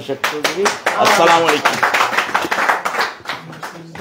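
A small group of people clapping for about three seconds at the close of a speech, thinning out near the end, with a man's voice briefly heard over it.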